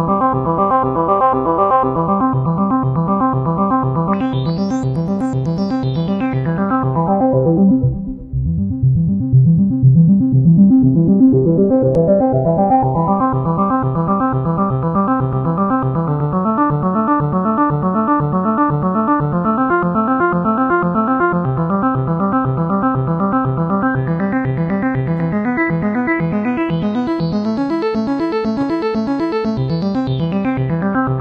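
Korg Nu:Tekt NTS-1 synthesizer playing a running pattern of quick repeating notes. Its tone is swept by knob turns: it brightens and dulls again about four to seven seconds in, drops out briefly around eight seconds, and brightens slowly over the last few seconds as the filter cutoff is raised.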